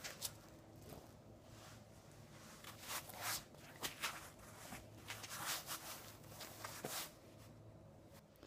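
Soft rustling and handling noises close to the microphone as a waist sweat belt is wrapped around the waist and fastened over clothing, in scattered bursts rather than a steady sound.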